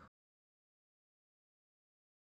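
Complete silence: the sound track drops out and is muted.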